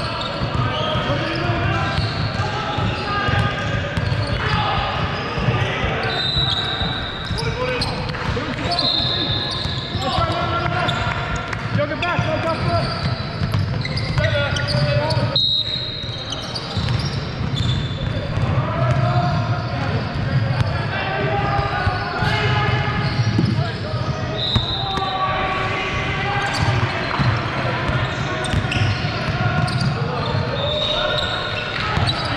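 Basketball game sounds on a hardwood court in a large hall: the ball bouncing, short high squeaks at intervals, and the indistinct voices of players and spectators throughout.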